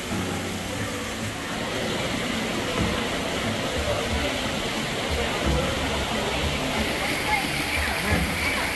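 Water running and splashing in a man-made rainforest stream and waterfall: a steady rushing noise that grows a little louder about two seconds in.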